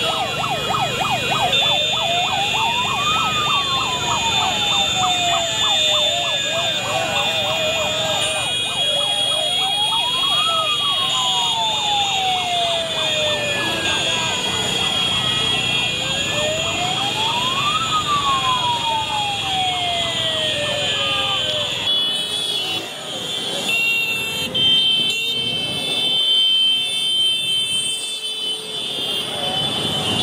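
An emergency-style siren wailing in slow sweeps, each rising quickly and falling back slowly about every seven seconds, with spells of fast warbling, over the engines of a motorcycle convoy. The siren stops about two-thirds of the way through, leaving traffic noise and voices.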